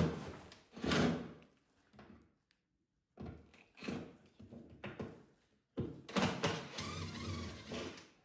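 Cordless drill-driver working screws out of the wooden boarding that boxes in a fireplace, in short spells, with knocks and thuds from the panel.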